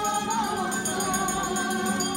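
A rondalla street band: a group of voices singing a folk song over fast strummed lutes and guitars, the strumming keeping a quick, even rhythm.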